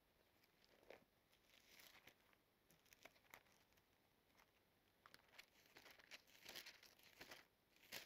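Faint rustling and flicking of thin Bible pages being leafed through by hand, in short soft bursts that come more often in the second half.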